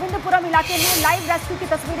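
A woman speaking Hindi in a studio news read, with a brief whooshing hiss of a graphics transition about three-quarters of a second in.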